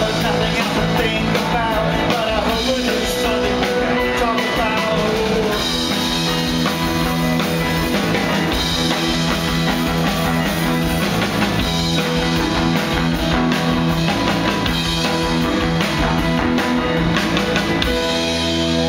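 A rock band playing live, with electric guitar, bass and drums. Singing rides over the band for the first five seconds or so, and then the band plays on without vocals.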